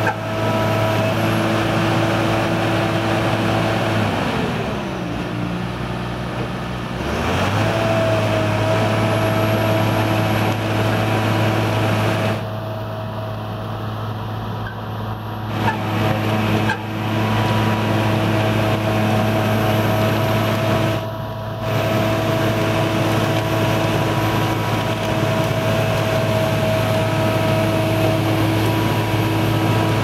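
Engine of a DESEC TL 70 tracklayer running steadily. About four seconds in, its note sinks, then comes back up some three seconds later. The sound dips briefly twice further on.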